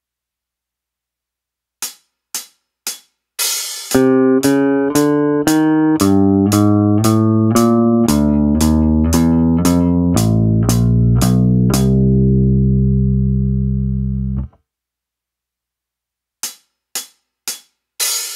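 Washburn Taurus T-24 four-string electric bass picked with a plectrum, playing a quarter-note warm-up: a chromatic run up frets 5-6-7-8, repeated, one note per beat with a click on each beat, ending on a long held note that cuts off suddenly. Before the bass comes in there is a count-in of clicks, and four more clicks near the end count in the next part.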